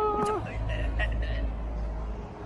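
Street ambience: a steady low rumble of road traffic, with brief voices of people nearby, one held call in the first half-second.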